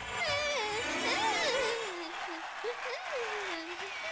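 A girl crying: a wavering, whimpering voice that rises and falls in pitch.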